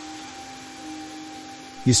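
Soft background music of steady, sustained tones held under a pause in the guided-meditation voice, which comes back with one word at the very end.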